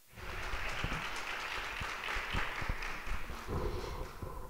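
Audience applauding, dense and crackling, easing off shortly before the end, with a few low knocks from a microphone being handled.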